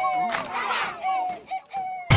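A crowd of children shouting and cheering together in high voices.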